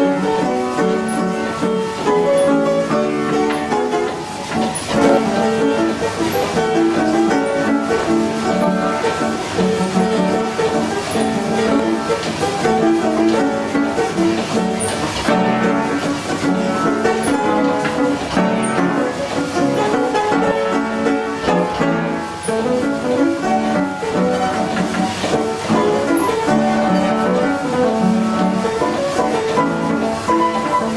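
Vogeler coffee-house piano, a pneumatic player piano driven by an electric motor and bellows, playing a tune from a perforated paper roll, with no pauses.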